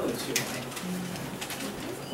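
A man's voice over a microphone, pausing mid-word with a short breathy hiss and then a low hummed 'mmm' that is held briefly.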